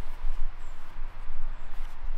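Rustling and rubbing of hands against a foam-padded SAM splint and a fleece sleeve as the splint is pressed and moulded around a forearm, over a steady low rumble.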